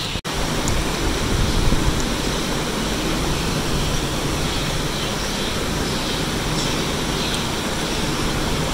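Steady rushing background noise with a low rumble underneath, broken by a brief dropout just after the start.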